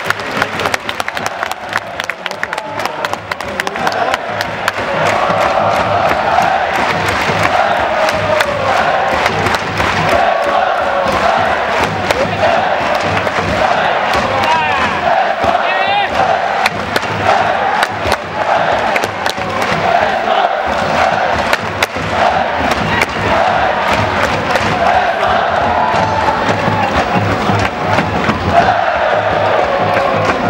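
A large football supporters' section singing a chant in unison, with a drum beating along. The singing swells about four seconds in and then stays loud.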